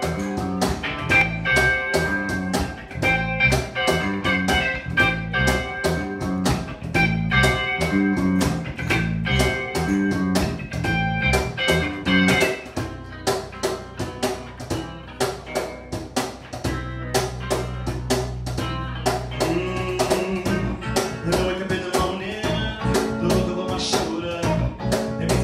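Live band playing a blues-tinged groove: electric guitar, bass guitar and a cajon keeping a steady beat. Partway through, the bass holds long low notes under the guitar.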